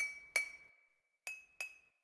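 A sampled double tap on a glass bottle played back twice through the iPad GarageBand Sampler from its on-screen keyboard. Each playback is a pair of sharp, ringing clinks. The second pair, about a second later, sounds a little higher, played from a higher key.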